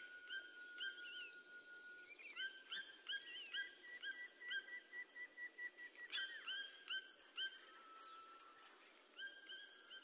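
Forest ambience: a steady high insect drone with many short rising bird chirps, several a second through the middle, and a few long held whistled tones.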